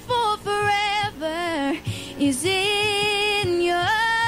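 A woman singing a slow country ballad over instrumental backing, holding long notes that slide up and down in pitch.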